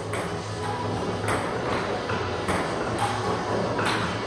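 Table tennis ball clicking off paddles and the table in a rally, about six sharp hits spaced roughly half a second apart, over background music.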